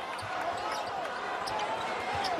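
Basketball dribbled on a hardwood court, a run of repeated low thumps, with sneaker squeaks over the steady noise of an arena crowd shouting.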